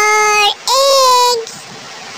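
A child's voice chanting two long, held syllables in a sing-song tone, the second a little higher, in the alphabet recitation's "for egg".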